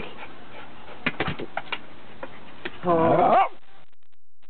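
A dog whimpers: one short whine of about half a second near the end, its pitch rising at the close, after a few short clicking sounds about a second in.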